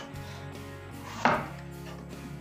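A single knife chop on a cutting board about a second in, over steady background music.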